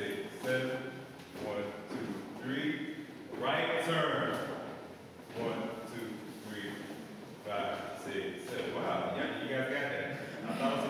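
A man's voice calling out in short phrases about a second apart, with a brief pause near the middle.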